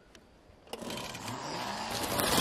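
After a near-silent start, a sudden rush of crackling, crunching noise begins about two-thirds of a second in and grows louder. It is an electric dirt bike's tyres rolling over dry leaves and twigs on a dirt trail.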